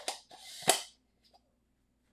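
Handling noise from a camera lens and its case: a sharp clack, a short rustle and a second sharp clack about two-thirds of a second in, as the lens is gripped and lifted out.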